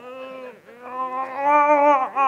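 A person's long, drawn-out groan of strain, held on one pitch in two stretches, the second a little higher, as they pull hard against a strong electromagnet in a tug of war.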